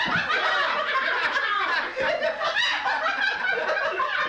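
Several people laughing and snickering together, overlapping and continuous.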